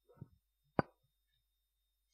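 Handheld microphone handled as it is passed from one person to another: a faint muffled rustle, then a single sharp thump a little under a second in.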